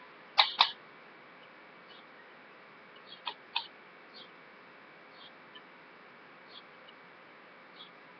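Two sharp clicks close together about half a second in, then a few fainter clicks and taps, from a plastic makeup compact and brush being handled. Low steady hiss in between.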